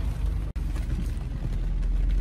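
Truck driving slowly, heard from inside the cabin: a steady low engine and road rumble, with a brief dropout about half a second in.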